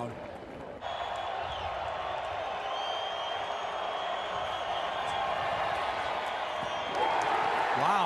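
Football stadium crowd noise: a steady, even roar of many voices that swells about seven seconds in as a play is run.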